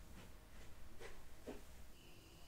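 Faint handling sounds: four short, soft scratchy strokes about half a second apart over a low room hum.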